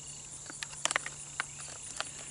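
A few short clicks and crinkles from a plastic water filter and its squeeze pouch being handled, bunched about a second in. Behind them, a steady high drone of crickets.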